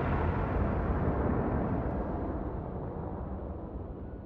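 The rumbling tail of an explosion sound effect dying away, steadily fading, its hiss going first and leaving a low rumble.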